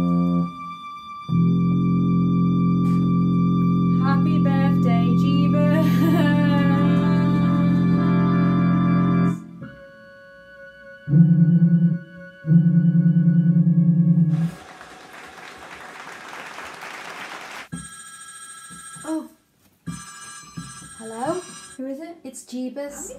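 Electronic keyboard on an organ setting playing long held chords: one chord held for about eight seconds, then two shorter, louder chords a little after the middle. They are followed by a few seconds of hiss.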